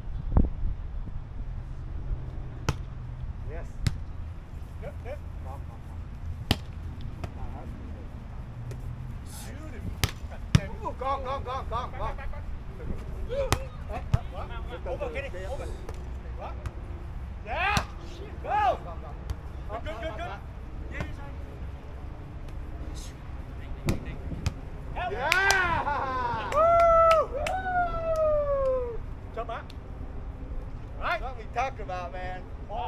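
Grass volleyball being played: a sharp hit on the ball every few seconds, with short shouts and calls from players. Near the end comes the loudest sound, a long shout that falls in pitch. A steady low wind rumble on the microphone underlies it all.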